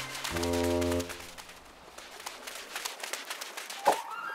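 A short, low, brass-like horn note in a cartoon soundtrack, held for under a second, followed by faint rapid light ticks and a quick whoosh near the end.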